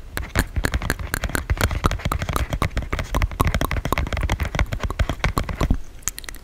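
Dry ASMR mouth sounds, a rapid irregular run of tongue clicks and lip smacks close to a condenser microphone.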